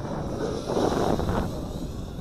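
Wind blowing across the microphone, swelling in a gust about halfway through, with the faint whine of the Eachine Wizard X220 racing quadcopter's electric motors above it.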